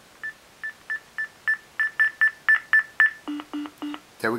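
Contour Surface Sound Compact Bluetooth speakerphone beeping at each press of its volume-up button: about four short high beeps a second, growing louder as the volume rises. Near the end come three lower tones, the signal that the volume has reached its limit.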